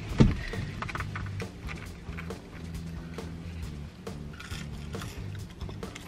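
Soft background music with low, slowly changing notes, and a single thump just after the start.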